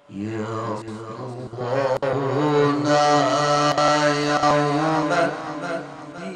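A male qari's melodic Quran recitation (qirat) through microphones. After a short pause he starts a new phrase, rising into long, ornamented held notes that are loudest mid-way and ease off near the end.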